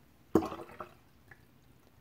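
A short splash of water poured from a tipped ceramic gaiwan into a glass pitcher, starting suddenly about a third of a second in and dying away within half a second, with a faint drip a little later.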